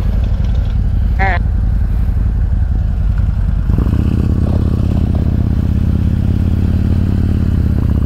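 Harley-Davidson Road King's V-twin engine idling at a stop, then taking throttle and pulling away about four seconds in, its engine note filling out as the bike gets under way.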